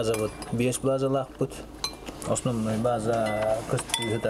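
Cutlery clinking against dishes at a table, a few short sharp clinks, under a man's speech.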